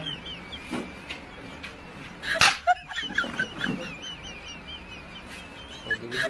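High, warbling bird-like chirping that goes on almost without a break, with a loud sudden sound about two and a half seconds in.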